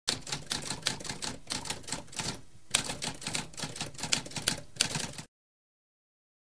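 Typewriter keys clacking in a fast, uneven run of strikes, with a brief pause about halfway through. It stops abruptly a little after five seconds in.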